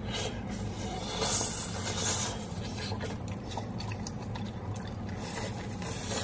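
Close-up eating of a cheesy pepperoni pizza slice: chewing with many small wet mouth clicks and smacks, over a steady low hum.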